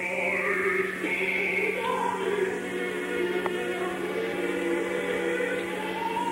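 Opera: voices singing with orchestra, from an old live recording in poor sound, with a steady hum underneath.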